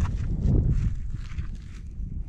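Wind buffeting the microphone with a steady low rumble, over soft crumbling and knocking as a gloved hand breaks apart a dug plug of grassy sod.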